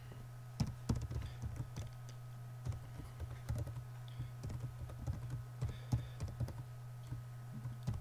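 Typing on a computer keyboard: irregular short runs of key clicks with brief pauses, over a steady low hum.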